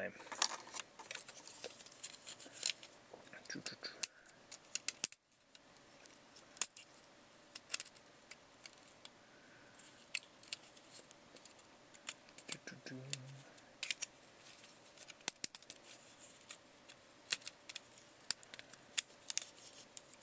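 Plastic parts and joints of a Transformers Generations Megatron action figure clicking and rubbing as it is transformed by hand from tank mode back to robot mode, in many irregular sharp clicks.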